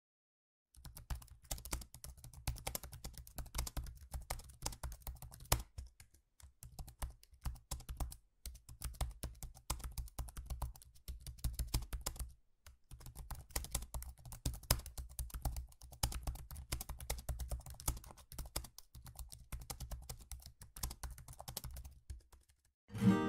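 Rapid typing on a computer keyboard, a steady patter of key clicks that starts just under a second in and breaks off for a few short pauses.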